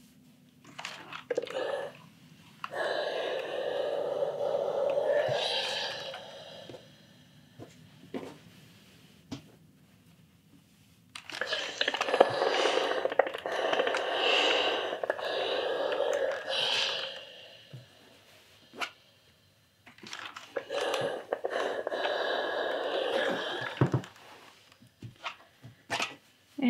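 Clothes iron sliding back and forth over knit fabric on a sleeve roll, with the fabric rustling as hands shift it: three stretches of rubbing noise a few seconds long, with short pauses and small knocks between.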